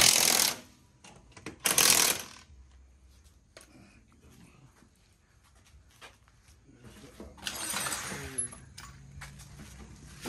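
Cordless impact wrench hammering in two short bursts, one right at the start and another about two seconds in. A softer, noisy stretch follows about seven seconds in.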